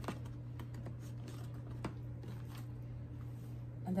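A plastic bank card handled and slid into the card slots of a Louis Vuitton monogram pocket agenda: light scattered clicks and taps, with a sharper click at the start and another about two seconds in.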